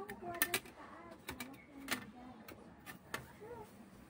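Scattered sharp clicks and taps of small metal parts and screws being handled and fitted onto a graphics card's circuit board, the loudest within the first half second and again about two seconds in.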